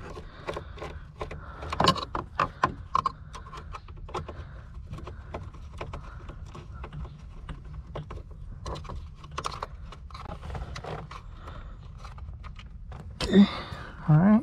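Hand Phillips screwdriver backing out a screw from the airbag mounting under a car dashboard: irregular small clicks and scrapes of the tool against metal and plastic trim. A brief louder knock comes near the end.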